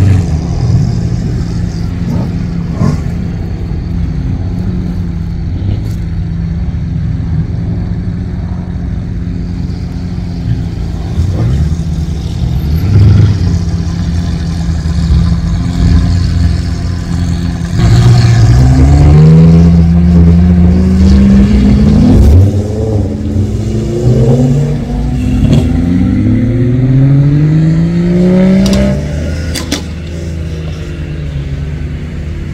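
Sports car engines idling with a steady low rumble. From a little past halfway, engines rev up and pull away in several rising sweeps, one after another, louder than the idle.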